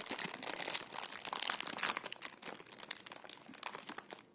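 Clear plastic candy bag crinkling and crackling as hands work at it to open it. The crinkling is busiest in the first couple of seconds and thins out near the end.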